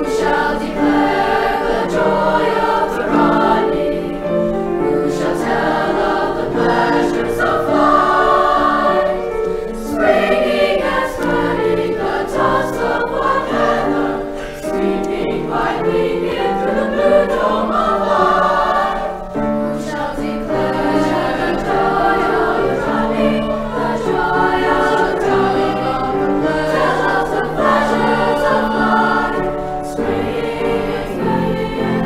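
SAB choir (soprano, alto and baritone voices) singing a brisk, joyful piece with piano accompaniment.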